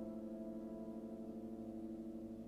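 A held piano chord, low notes included, left ringing on the sustain and slowly fading, with no new notes struck.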